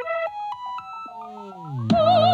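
Synthesizer accompaniment playing a quick run of short notes; about a second in, several tones slide down in pitch and settle into low held notes.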